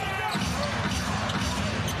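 Arena crowd noise during live basketball play, with a basketball being dribbled on the hardwood court.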